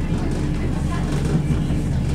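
Steady low rumble inside the passenger coach of a Southern Class 171 Turbostar diesel multiple unit on the move: its underfloor diesel engine and its wheels running on the rails.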